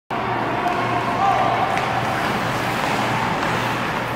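Ice-arena crowd ambience during play: a steady wash of spectators' chatter with a low steady hum underneath, and a faint tap near two seconds in.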